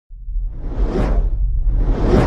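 Whoosh sound effect from an animated intro, swelling to a peak about halfway and easing off over a deep steady rumble; a second whoosh begins to build near the end.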